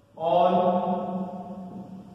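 A man's voice drawing out one long syllable on a steady pitch, starting just after the beginning and fading away over about a second and a half.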